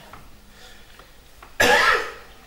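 A man coughs once, a short loud cough about one and a half seconds in, after a pause in a quiet room.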